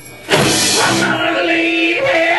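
Live band with acoustic guitar and fiddle: the music drops out for a moment, then comes back in with a sudden loud hit. About a second in, the drums and bass fall away, leaving guitar and fiddle holding notes.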